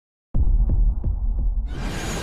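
Animated-intro sound effect: a deep bass drone pulsing about three times a second like a heartbeat, starting abruptly after a moment of silence, with a rising whoosh of noise building over it near the end.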